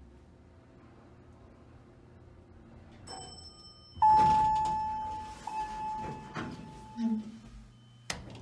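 Elevator car direction-lantern chime sounding as the down arrow lights: one clear ringing tone struck twice, about a second and a half apart, the two strokes signalling that the car is going down. Knocks and a sliding-door rumble follow.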